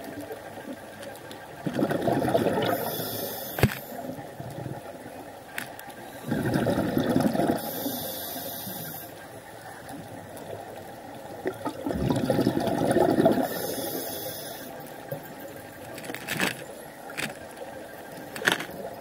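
Scuba diver breathing through a regulator underwater: a surge of bubbling exhalation about every five to six seconds, each breath with a high hiss, and a few sharp clicks between.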